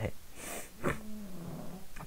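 A man drawing a breath, then a short low hummed 'mm', falling slightly in pitch, as a hesitation between sentences.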